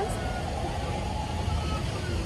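Steady outdoor background noise, a low rumble with a faint murmur of distant voices.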